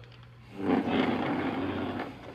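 A loud scraping, rubbing noise close to the microphone, starting suddenly about half a second in and easing off near the end.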